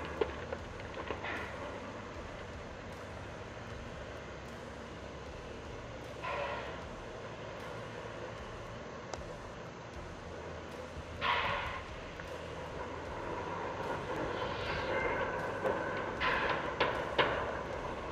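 Large mining power shovel at work: a steady machinery drone with a few brief louder swells, about six and eleven seconds in and again near the end.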